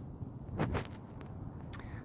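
Quiet background with a low steady hum and a few faint, brief rustles and ticks.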